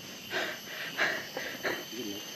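A person breathing hard in short, irregular breathy puffs.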